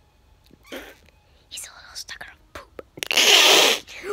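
A child's breathy, whispered vocal noises in short puffs, then a loud hissing burst of breath lasting nearly a second about three seconds in.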